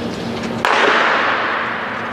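Starting gun fired once to start a sprint, a sharp crack about two-thirds of a second in, followed by a long echo that dies away over about a second.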